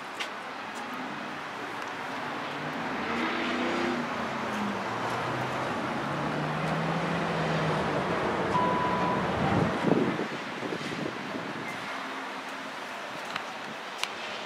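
Road traffic: a motor vehicle's engine passes by, falling in pitch as the sound swells to its loudest about ten seconds in, then eases away. A short beep sounds just before the peak.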